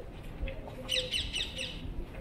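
A bird giving a quick run of about six short high chirps, starting about a second in and lasting under a second.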